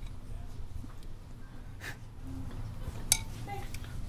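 Quiet handling at a guitar repair bench over a low steady hum: a short puff of breath about two seconds in, and a single sharp clink of a small metal pallet knife near three seconds in.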